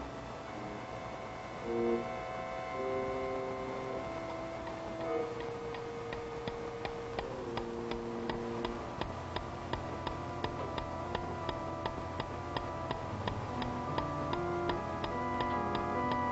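Suspense music of held organ-like notes, with a clock ticking loudly, about two ticks a second, joining in about six seconds in and running on under the music.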